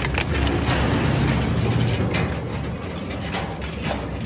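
Industrial twin-shaft shredder's cutter shafts turning with a steady low drone, crunching the last fragments of the fed object with a few sharp cracks in the first second or two, then running on with only scattered crackles.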